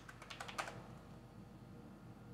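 Faint typing on a computer keyboard: a quick run of keystrokes in the first half second or so, then it stops.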